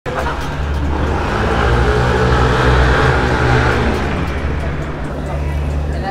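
A motor vehicle's engine running, growing to its loudest about three seconds in and then fading, with people's voices in the street.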